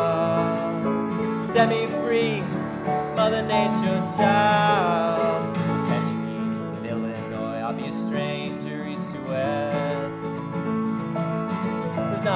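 Acoustic guitar strummed in a country-style song, with a voice holding long, wavering notes in the first half and the guitar carrying on alone after.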